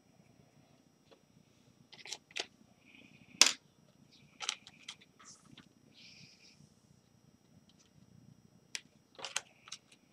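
Clear plastic frisket film crinkling as it is handled and pressed against a charcoal drawing to lift charcoal: a scatter of sharp crackles and short rustles, busiest a few seconds in and again near the end.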